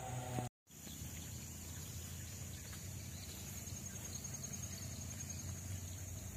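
Rural outdoor ambience: a steady, high-pitched insect trill over a faint low hum, with the sound cutting out briefly about half a second in.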